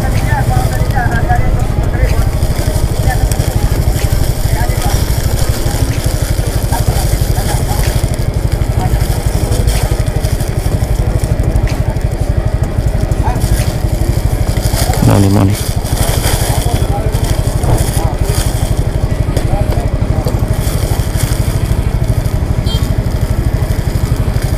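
Plastic bags crinkling and rustling as wrapped parcels are handled, over the steady low running of a motor scooter's idling engine.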